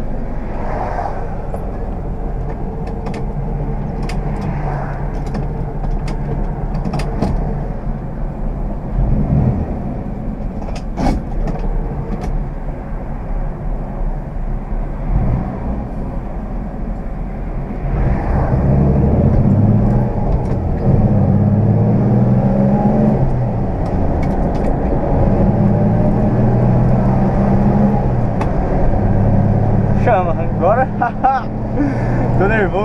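Cabin sound of a moving 1969 Ford Aero Willys: its inline-six engine and tyre/road noise run steadily, with a few light clicks. About eighteen seconds in, the engine note grows louder and fuller as the car pulls harder.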